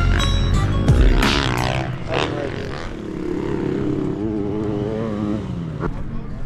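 Background music with a dirt bike engine revving and passing in the first two seconds, its pitch falling away. Then the music carries on alone.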